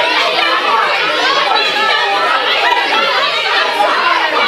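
A crowd of teenage voices, many talking and calling out at once, loud and overlapping.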